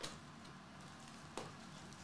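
Two light ticks, one at the start and one about a second and a half in, from foil trading-card packs being handled on a tabletop, over faint room hiss.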